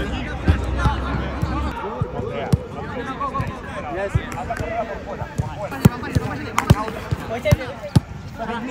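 Footballs being kicked in a passing drill: a string of sharp, irregular thuds of boot on ball, two of them louder about two-thirds of the way through. Players' voices call in the background.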